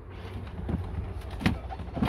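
Electric second-row seat of a 2016 Mercedes GLS350d folding forward at the press of a button: its motor runs, with one sharp click about one and a half seconds in.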